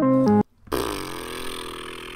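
Piano chords from a hip-hop track cut off suddenly about half a second in. A moment later a man lets out a long, drawn-out vocal exclamation that fades away.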